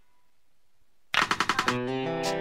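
Background music with a plucked-guitar beat drops out to near silence for about a second. It comes back in with a quick roll of about eight sharp hits, then carries on.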